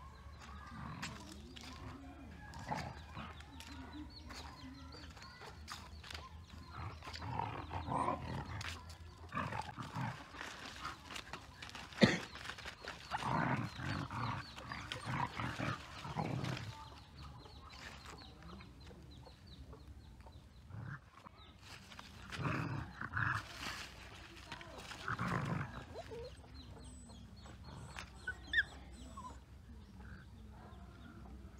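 Dogs play-fighting: growling and snarling in rough bursts as they wrestle, with dry leaves rustling under their feet and one sharp snap near the middle.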